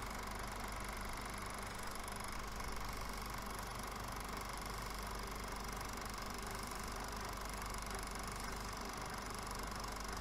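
A faint, steady mechanical hum with hiss over it, even and unchanging throughout.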